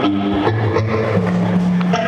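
Live band jamming on electric guitars with bass over a loose reggae-rock groove, with sustained low bass notes under the guitar notes.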